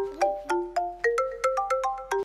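Mobile phone ringing: a ringtone playing a quick, repeating melody of short ringing notes, several a second.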